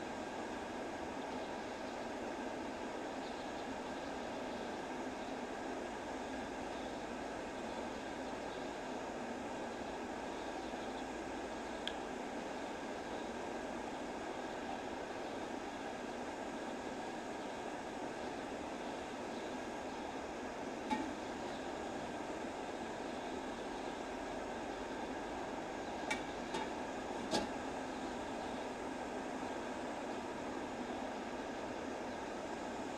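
Steady whooshing background noise, with a few faint clicks: one about twelve seconds in, one a little past twenty seconds, and a small cluster near the end.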